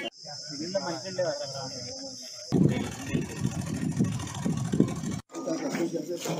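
Several men's voices talking over one another in the background, in short cuts of outdoor field audio. A steady high hiss runs under the voices for the first two and a half seconds, then the audio cuts to a louder jumble of voices, with a brief dropout about five seconds in.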